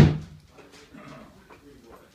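One sharp knock right at the start that rings out briefly, like a door or wooden frame being struck, followed by faint scuffs and small clicks.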